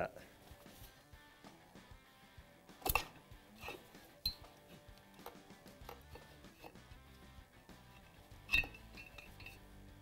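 Light metal clinks and knocks as the aluminium cylinder of a Honda TRX450R engine is worked up off the piston and over the cylinder studs, a handful of separate taps with the loudest about three seconds in and another near the end. Faint background music runs underneath.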